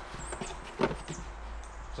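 Cardboard kit box and the filter parts inside it being handled: a few light knocks and rustles, the sharpest a little under a second in.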